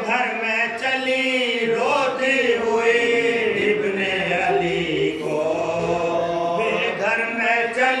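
Men's voices chanting a marsiya, the Urdu elegy for Imam Husain, in long drawn-out notes that slowly rise and fall without a break.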